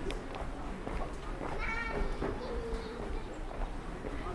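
Footsteps on a paved pedestrian street, with a short high-pitched call about one and a half seconds in.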